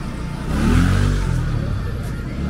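Motor scooter passing close by: its engine swells about half a second in and falls in pitch as it goes past, then fades.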